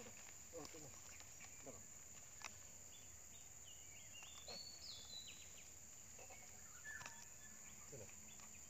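Quiet rural ambience: a steady high insect drone, a bird giving a run of short whistled notes in the middle, and a few soft knocks of a hoe digging into soft, rotting soil.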